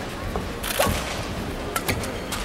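Badminton rally: racket strings striking the shuttlecock, sharp cracks about a second apart.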